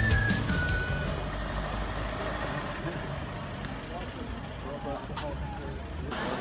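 The tail of a music track with a whistle-like melody ends about a second in. Then comes the steady low rumble of idling buses, with people talking around them.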